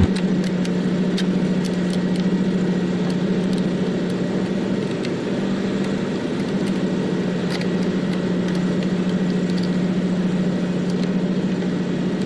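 Steady hum of an idling engine, with a few light clicks as the clips on a truck's plastic air-cleaner housing cover are worked open.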